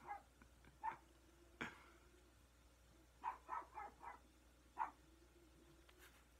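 A dog barking in short separate barks: one about a second in, a quick run of four a little past three seconds, and one more near the five-second mark. A single sharp knock comes between the first two barks.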